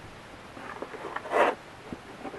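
Handling noises: faint rustles and clicks, then a short scraping swish about a second and a half in, as a charger and its cable are pulled out of a fitted polystyrene foam case.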